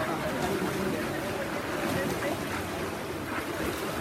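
Steady splashing of swimmers racing down their lanes, with indistinct voices, in a large indoor pool hall.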